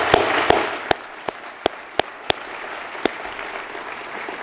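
Audience applause, a dense round of clapping that thins to a few scattered claps about a second in and dies away by about three seconds.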